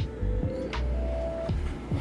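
Background music with a steady low bass and held notes, over a marker scratching on a whiteboard.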